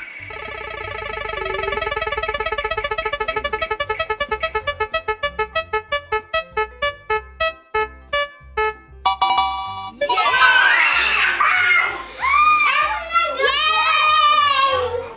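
Digital spin-the-wheel sound effect: rapid pitched ticks that gradually slow down over about nine seconds as the wheel winds down, then stop. Children then shriek and shout excitedly.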